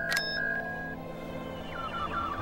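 Sci-fi computer beeps and tones from a film soundtrack as a blood sample is analysed for a midichlorian count: held electronic tones with a short click just after the start, then a run of tones stepping down in pitch near the end, over a low steady hum.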